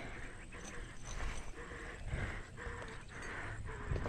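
Mountain bike rolling over a rocky, gravelly dirt trail: tyres crunching on loose stones and the bike rattling over the bumps, with a low rumble and a noise that pulses about twice a second.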